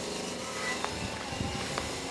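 Steady outdoor background noise with a hum of distant traffic and a couple of faint clicks.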